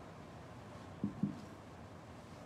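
Two soft, dull thumps about a fifth of a second apart, about a second in, as two metal chalices are set down one after the other on a cloth-covered altar.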